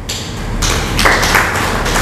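Audience applauding, swelling louder over two seconds.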